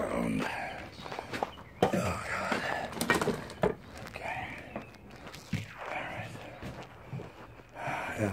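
Footsteps and handling noise from a handheld phone as the person carrying it walks, with a few sharp knocks scattered through.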